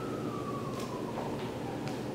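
A faint high tone slowly falling in pitch, with a few soft taps as bare hands and feet land on an exercise mat.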